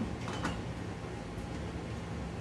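A couple of faint clicks as a metal CPU heat sink is set down and lined up on the processor, over a steady low hum.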